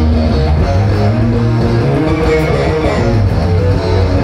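A hard rock band playing live, electric guitar to the fore over a heavy bass line, at steady, loud volume.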